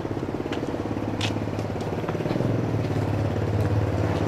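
1945 Harley-Davidson Knucklehead's overhead-valve V-twin idling with an even, steady beat, with a few light clicks over it.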